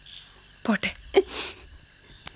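Crickets chirping steadily in the background, a fast even pulsing. A few short vocal sounds are heard over it.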